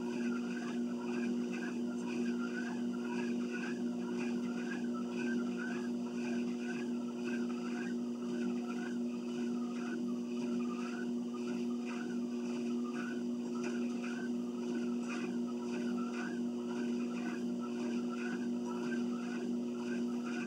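A treadmill running under someone walking: a steady motor hum, with a rhythmic squeak repeating about twice a second.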